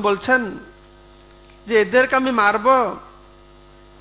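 Steady electrical mains hum, heard plainly in the pauses between two short phrases of a man's voice reciting through a microphone.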